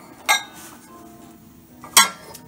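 Glass dishes clinking as they are handled: two sharp knocks of glass on glass, each with a brief ring. The first comes soon after the start; the second, louder, comes at the very end.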